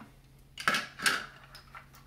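Two short clacks of hard 3D-printed plastic, about 0.7 and 1 second in, as an RC car's body shell is pried open by hand.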